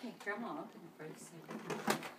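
Faint, indistinct voices of people in a small room, with a single sharp click or knock just before the end.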